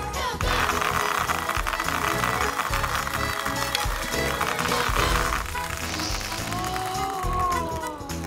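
Plastic pony beads pouring out of a tube into a tray, a dense rattle of many small clicks lasting about five seconds, over background music with a steady beat and a few gliding tones near the end.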